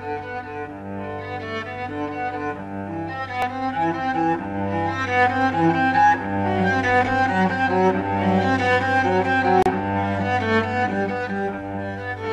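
Recorded cello music: a bowed melody moving over a steady low held note.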